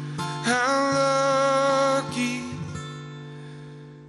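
A live song on a capoed steel-string acoustic guitar with a male voice. About half a second in, a long wordless sung note slides up into pitch and holds, then the sound fades toward the end.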